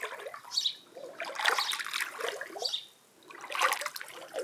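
Water sloshing and splashing in a stone garden water tank, in irregular surges with a short lull near the end.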